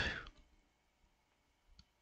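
The last word of a man's voiceover fades out, then near silence. One faint click comes near the end.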